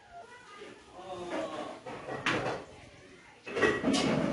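Indistinct voices of people talking in a small room, with a short, louder sound near the end.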